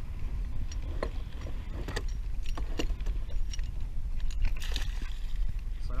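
Wind rumbling on the microphone and water sloshing against a plastic kayak hull, with scattered sharp clicks and clinks of gear being handled on the kayak.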